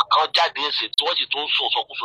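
Speech only: a person talking, the voice sounding narrow, somewhat like a telephone.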